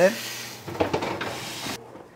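Water hissing into steam on a hot sheet pan inside the oven, with the oven door being swung shut with a clunk and rattle about a second in. The hiss cuts off abruptly near the end.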